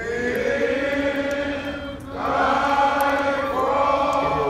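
Voices singing long held notes in two phrases, with a short break about two seconds in.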